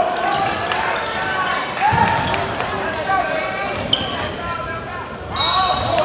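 Sound of a live basketball game in a gym: a basketball bouncing on the hardwood court, with players and spectators calling out, echoing in the hall.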